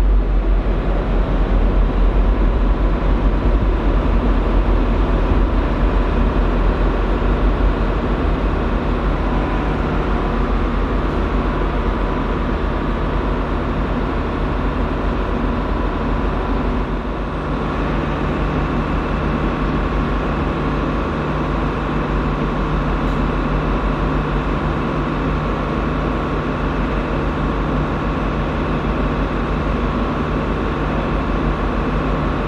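Diesel locomotive engines running steadily, a continuous hum with a constant engine note. About halfway through, the level dips briefly and the engine note changes as a different locomotive is heard.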